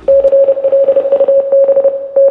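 Electronic intro sting: one steady mid-pitched tone that starts suddenly and stutters rapidly as it is held.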